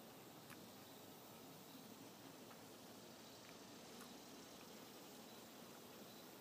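Near silence: faint outdoor background hiss with a few tiny faint ticks.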